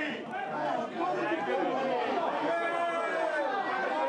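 Spectators chattering and calling out at once, many overlapping voices.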